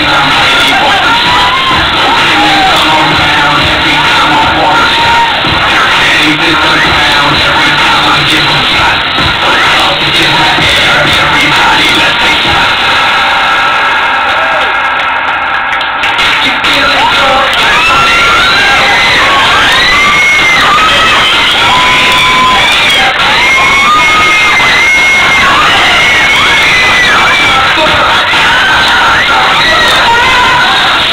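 Loud dance music played over speakers, with an audience cheering and shouting. The music thins briefly around the middle, after which high-pitched screams and whoops from the crowd ride over it.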